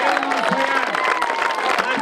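A crowd applauding steadily, with a man's voice talking through the clapping.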